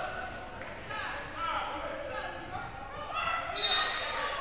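Voices of players and spectators echoing in a gymnasium, with a basketball bouncing on the hardwood floor. A short, high, steady whistle tone sounds near the end, a referee's whistle.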